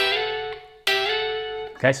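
Clean electric guitar on a Telecaster-style body, playing two picked double-stops on the G and high E strings. The first is struck at the 12th fret and rings for about a second. The second is struck just under a second in, slides up toward the 14th fret and rings on.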